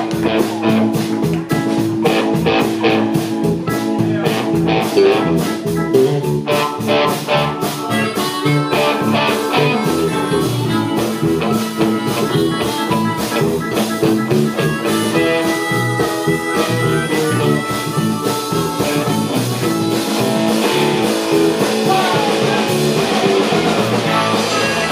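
Live rhythm & blues band playing a driving groove on electric guitar, bass, keyboards and drums, with a steady drum beat. By mid-way a blues harmonica is played into the vocal microphone.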